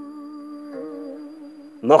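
Soft background music: a held chord of several steady notes with a slight waver, and another note joining briefly about a second in.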